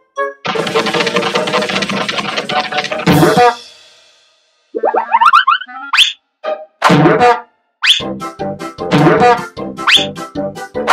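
Cartoon soundtrack: about three seconds of busy music that rings out, then a springy rising boing effect and a run of short, bouncy musical hits.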